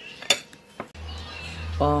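Cutlery clinking against a dinner plate, a few sharp clinks with one loudest near the start. A little under a second in, a low steady hum starts abruptly and carries on.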